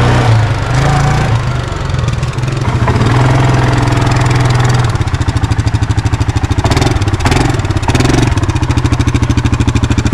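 A quad bike (ATV) engine running as it is ridden, then settling to an idle with a fast, even pulsing beat from about five seconds in. A couple of brief, brighter noises come around seven to eight seconds in.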